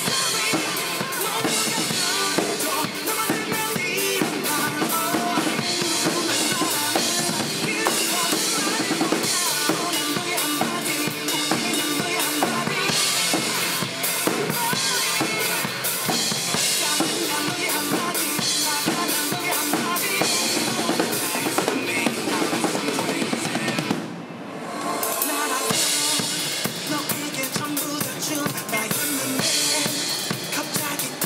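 Acoustic drum kit played hard along to a rock song's backing track over a loudspeaker: kick drum, snare with rimshots and cymbals. The music breaks briefly about 24 seconds in, then comes back in.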